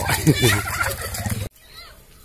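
Children shouting and squealing as they play and throw mud in a wet rice paddy, over a low steady hum. About one and a half seconds in the sound cuts off abruptly to a much quieter outdoor background.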